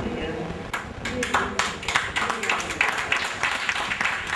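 A small group applauding: scattered hand claps begin under a second in and quickly build into dense, steady clapping.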